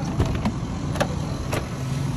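A car engine running steadily, heard from inside the cabin as a low hum, with a few short knocks.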